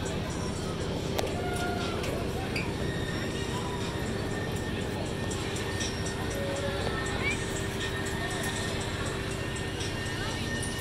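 Fairground noise: music and voices in the background over a steady low machine hum.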